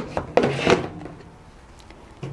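The K40 laser cutter's stock extraction fan being pushed onto the cutter's back panel: a few knocks and scrapes in the first second, then quiet handling.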